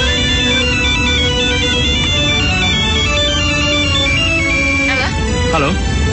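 A mobile phone ringtone, a high stepping melody of short electronic notes, plays over background music, stopping about four and a half seconds in; a voice begins about five seconds in.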